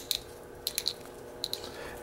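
A-1 Security Herty Gerty tubular key cutter turned by hand, its cutter shaving a cut into a brass tubular key: a few faint, short, sharp clicks and scrapes spaced irregularly over a quiet background.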